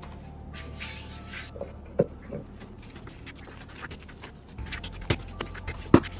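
A few sharp taps and knocks of hands and dough on a silicone pastry mat on a kitchen counter, the loudest just before the end, as flour is spread and the dough is set down for kneading. A steady low hum sits underneath.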